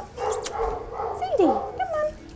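An animal's drawn-out whining calls that glide up and down in pitch, one sliding steeply down about halfway through.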